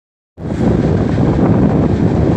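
Loud wind buffeting the microphone, a low rumbling rush that starts about a third of a second in.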